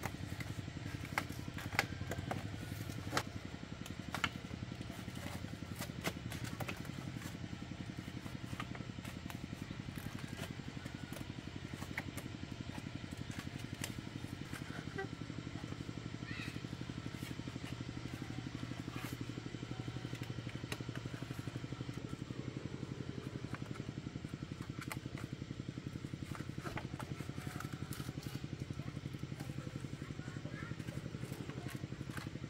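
Light clicks and knocks of bamboo slats being handled and tied onto a bamboo frame, busiest in the first few seconds, over a steady low engine drone.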